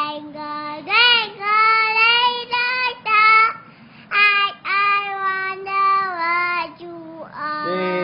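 A young child singing in a high voice, in short phrases with the pitch gliding up and down between notes. A second, lower voice joins in near the end.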